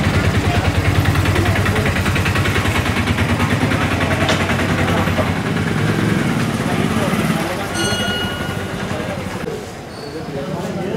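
A motor vehicle engine running close by with a rapid, even throb, dropping away about seven and a half seconds in, with voices in the background.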